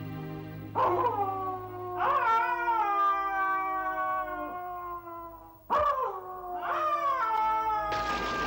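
Dog howling: four long howls in two pairs, each rising sharply and then sliding slowly down in pitch.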